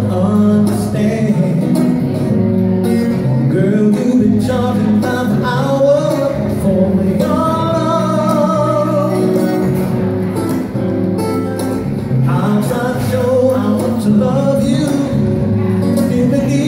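A man singing to his own acoustic guitar accompaniment, with a steady low bass line under the sung melody.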